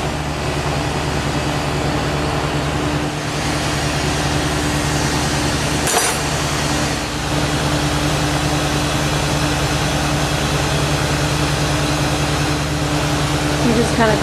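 Steady rushing roar with a low hum from a glass lampworking torch burning as glass is worked in its flame, with one short click about six seconds in.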